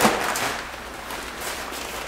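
Nylon fabric of a collapsible drone landing pad rustling and swishing as its spring-steel hoop is twisted to fold it, with a sharp burst of noise at the start.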